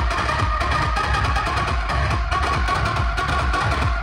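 Loud music with a heavy, steady bass-drum beat, played through a large outdoor DJ loudspeaker stack.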